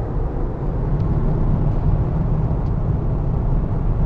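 Car cabin noise while driving: a steady low rumble of road and engine noise heard from inside the moving car.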